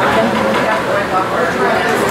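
Indistinct voices of several people talking in a room, without clear words.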